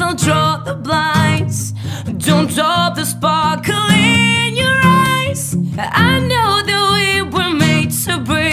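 A woman singing, her voice wavering on held notes, over a strummed steel-string acoustic guitar.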